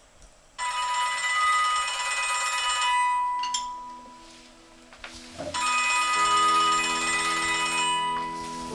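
A telephone ringing twice, each ring about two and a half seconds long with a pause between, and soft low music notes coming in underneath.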